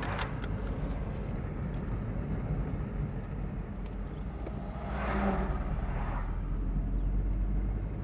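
Car cabin noise while driving: the engine and tyres make a steady low rumble, with a louder rush of road noise about five seconds in.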